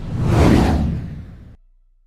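Whoosh sound effect of an animated logo sting, swelling to a peak about half a second in and then fading away.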